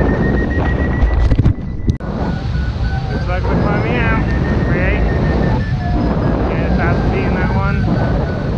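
Strong wind rushing and buffeting over the microphone of a hang glider in flight, with a flight variometer beeping a steady high tone whose pitch creeps up and then drops a step, as lift changes. A few short voice bursts without clear words come through the wind.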